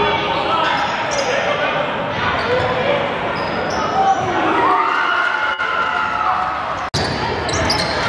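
Live gym sound of a basketball game: the ball bouncing on the hardwood court under players' and spectators' voices, echoing in a large gym. The sound cuts out for an instant about seven seconds in.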